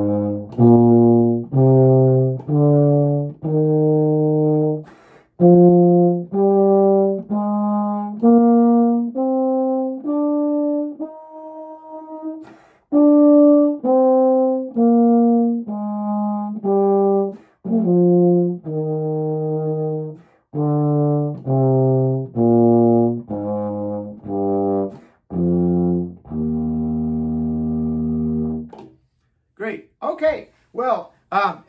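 Euphonium playing a concert B-flat scale over two octaves, about one note a second, climbing to the top and back down, and ending on a long held low note near the end.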